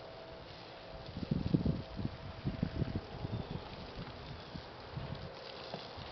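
A small wooden boat being rolled over by hand on a carpet-padded stand: a run of low, dull thumps and rumbles, loudest about a second and a half in, then a few lighter knocks.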